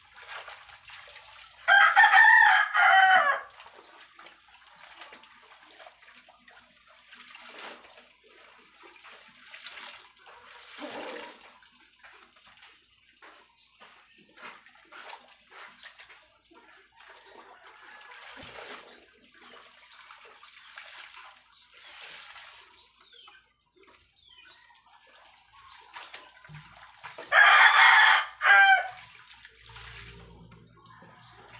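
A rooster crows twice, once about two seconds in and again near the end, each crow lasting about a second and a half. Between the crows there is quieter splashing and rubbing of clothes being hand-washed in a basin of soapy water.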